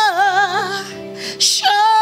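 A woman singing a gospel worship song into a microphone: a wavering, ornamented phrase with strong vibrato, a quick breath about a second and a half in, then a long held note.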